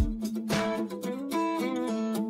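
Background music led by a plucked guitar playing a melody, with the deep bass and drums dropped out.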